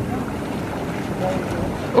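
Hot tub jets churning the water, a steady rush of bubbling air and water, with the jets turned up so the water bubbles hard.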